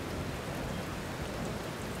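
A steady, even rushing hiss, like rain, with no other distinct sound.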